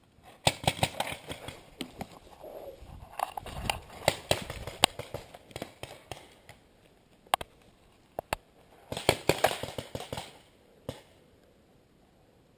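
Paintball markers firing: three bursts of rapid pops, with a few single shots between the second and third burst.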